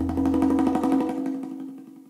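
Background music: a held chord with quick repeated notes, fading out near the end.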